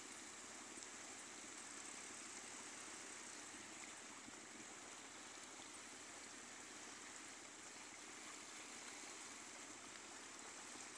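Near silence: a faint, steady hiss with no distinct sounds in it.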